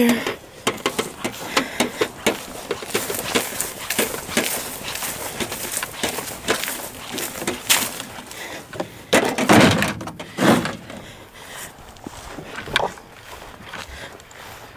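Irregular knocking and crinkling of junk, including an aluminium foil pan and plastic packaging, being thrown and shoved into a plastic bin, with close handling noise.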